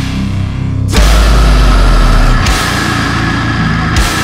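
Deathcore breakdown: heavy metal band music that thins out for about the first second, then slams back in with the full band and a deep bass drop about a second in, with another heavy hit near the end.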